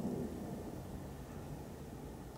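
Faint steady background noise with no distinct sound in it: outdoor ambience between words.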